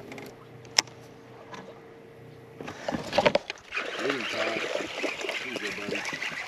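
A hooked fish splashing at the water's surface as it is reeled in to the boat, starting a little past halfway, with a short voice just before. Earlier there is a faint steady hum and a single sharp click a little under a second in.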